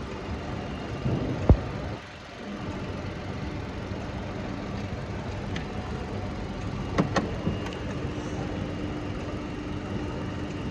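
Car engine idling with a steady hum. A hand tool working at the bonnet latch gives one sharp metallic knock about one and a half seconds in and a few quick clicks about seven seconds in.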